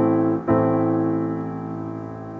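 A minor chord played on a piano, with a low bass note under it. The chord is struck again about half a second in and left to ring, fading slowly.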